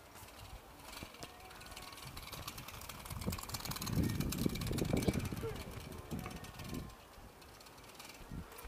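A child's small bicycle rolls past close by, louder through the middle, with a fast run of light ticks from its wheels, over the murmur of people's voices.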